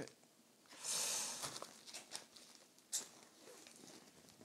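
Plastic shrink wrap on an LP record jacket being picked at and torn by fingers. There is a crinkly tearing burst about a second in, then scattered small crackles and a sharper click near three seconds.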